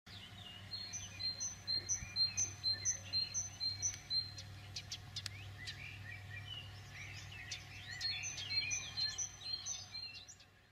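Several birds singing and chirping, one repeating a short high chirp about twice a second near the start and again near the end, over a faint low hum.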